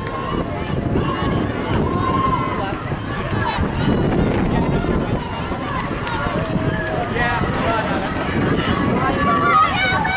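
Spectators' voices talking and calling out at the trackside, with more shouted calls in the second half, over a steady low rumble.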